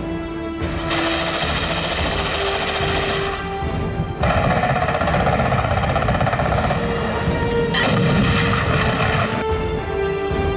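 Loud bursts of gunfire over a dramatic music score with held notes. One burst starts about a second in and lasts about two seconds; a longer stretch of firing runs from about four seconds in to near the end.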